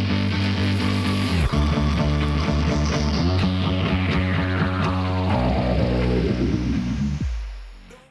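Music with a steady rhythm, with a long falling sweep over its last few seconds before it fades out near the end.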